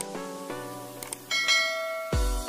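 Music of quick, bell-like notes. Just after a second in there are two short clicks, followed by a bright ringing chime: the mouse click and notification-bell ding of a subscribe-button animation.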